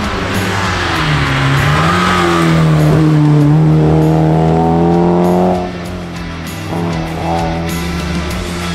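Alfa Romeo Giulia rally car's four-cylinder engine under hard acceleration, its pitch climbing steadily until the throttle comes off sharply about two-thirds of the way through, then a short rev again near the end. Music plays underneath.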